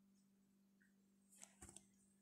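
Near silence: a faint steady low hum, with a brief cluster of faint clicks about one and a half seconds in.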